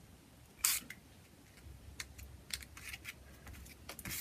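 One brief hiss of a small hand-pumped spray bottle squirting ink about half a second in, followed by a few faint clicks and taps.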